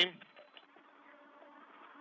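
Faint steady hiss of an open space-to-ground radio channel, with a weak low hum, in a pause between transmissions.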